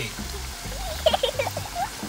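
Plantain slices (tostones) frying in hot oil, a steady crackling sizzle. A voice is heard briefly over it in the middle.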